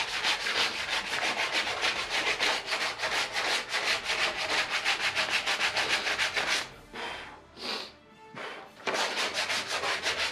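Hand sanding of a painted sheet-metal helmet piece, rubbed back and forth in quick, even strokes, about five a second, to take off scorched paint and scoring. The strokes break off about seven seconds in, with a couple of short rubs, then pick up again near the end.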